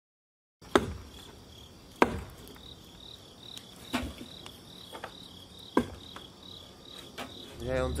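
Crickets chirping steadily, starting after a brief silence, with several sharp cracks and knocks from a small fire of burning joss paper in a metal grill tray being stirred with a stick; the loudest come about a second and two seconds in.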